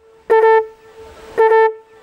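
A conch shell being blown as a horn signal for the coffee-picking work: two short, loud blasts of one steady note about a second apart, with the note held faintly between them.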